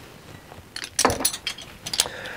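Metal bottle opener clicking and clinking against a glass beer bottle's crown cap as the bottle is opened, with a cluster of sharp clicks about a second in and another click near the end.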